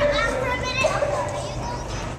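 A group of young children chattering and calling out at once, several high voices overlapping with no clear words.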